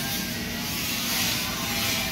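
Steady hiss and low hum of running machinery, holding an even level throughout.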